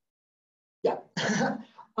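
A man's short, breathy vocal burst with a sharp start about a second in, after near silence: a cough-like exhale running into a spoken "yeah".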